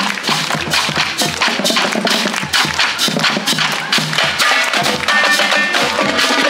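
Marching band playing on parade: a drum line of snare drums and multi-tenor drums beats fast, dense strokes under the band's music.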